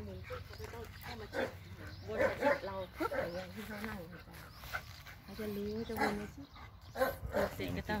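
A German Shepherd barking during a leash training session, mixed with a man's voice.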